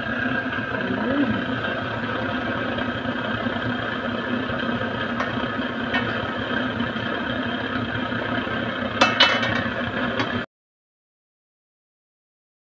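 Water boiling hard in a stainless steel wok of mud crabs: a steady bubbling rush, with a few sharp metal clinks of the lid against the pot about nine seconds in. The sound cuts off suddenly about ten seconds in.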